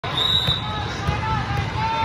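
Sports hall ambience: volleyballs bouncing with low thuds, a few short sneaker squeaks on the court floor, and voices around the hall.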